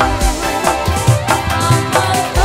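Live dangdut band music: a steady kendang hand-drum beat under keyboard and melody lines.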